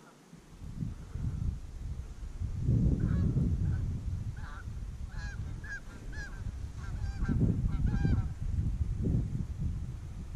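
Canada geese honking: a run of short honks from about three seconds in until near the end. Under them, wind buffets the microphone in gusts.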